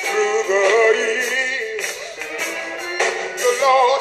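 Gospel singing with live band accompaniment: a sung voice wavering over a steady percussion beat.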